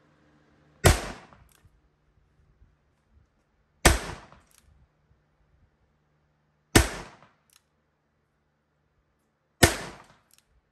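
Four shots from a vintage Hi-Standard Double-Nine .22 revolver, fired one at a time about three seconds apart. Each sharp crack dies away quickly, followed by a faint echo.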